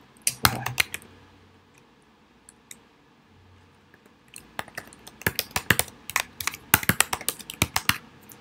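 Typing on a computer keyboard as an email address is entered: a few keystrokes about half a second in, a pause of a few seconds, then a quick, dense run of keystrokes through the second half.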